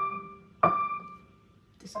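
Upright piano played slowly by a beginner, single notes: a note rings on from just before, then the same note is struck again about two-thirds of a second in and left to fade.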